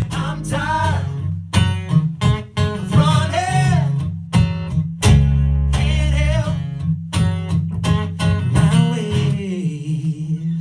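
Live acoustic band playing a song: two acoustic guitars strummed over an electric bass line, with voices singing into the microphones.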